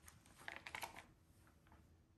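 Faint rustling and a few light clicks of plastic-wrapped medical kit packaging being handled on a tabletop, fading out.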